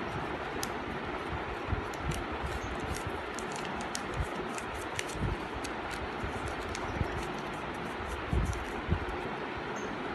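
A small slip of paper being folded by hand: light crackles and rustles of paper, with a few soft thumps of hands on cloth, over a steady background hiss.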